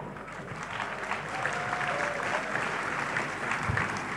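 A large church congregation applauding in a big hall: dense, steady clapping that swells a little after the first second.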